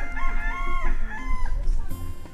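A chicken calling: one wavering call in the first half, then a shorter one.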